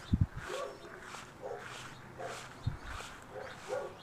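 A dog barking about five times, short and fairly faint, under a second apart, with soft footsteps through grass underneath.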